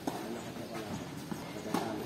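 Tennis ball struck by rackets in a rally: two sharp hits about a second and three-quarters apart, with a softer knock between them.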